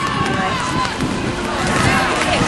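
Several voices shouting and calling across a rugby pitch, overlapping one another as players pile into a ruck.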